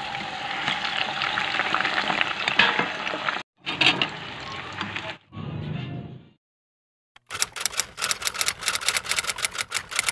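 Blocks of tofu frying in hot oil, sizzling, broken by two sudden cuts and stopping about six seconds in. After a second of silence, a quick, even run of clicks starts, about five a second.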